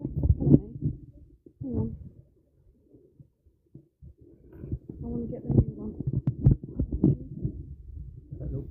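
Handling noise from a phone while an external microphone is fitted to it: irregular muffled thumps and rubbing, going nearly quiet for a couple of seconds in the middle before the knocking resumes.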